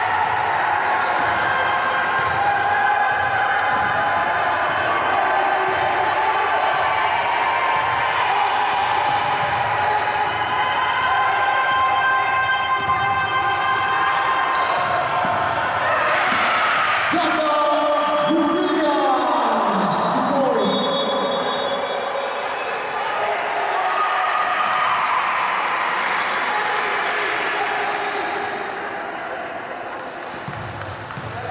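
Basketball being dribbled on a hardwood court in a large, echoing gym, with players and coaches calling out; about seventeen seconds in, one long falling shout.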